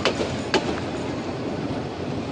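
Passenger train coaches rolling past on the track: a steady rumble of steel wheels on rail, with two sharp clacks about half a second apart in the first second as the wheels cross a rail joint.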